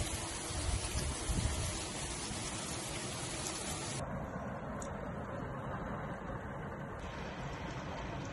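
Heavy rain pouring down and splashing on wet paving and roof tiles, a steady downpour hiss. Its tone changes abruptly about four seconds in and again near the end, turning duller.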